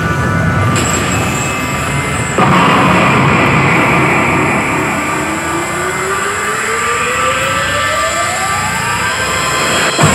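Grand Cross Legend coin pusher's bonus-game music and sound effects, with a sudden louder hit about two and a half seconds in, then a long rising sweep that builds up to the jackpot chance.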